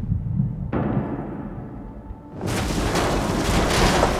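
Dramatic film score with a heavy low rumble, then, about two and a half seconds in, a loud sustained crash of a car tumbling over.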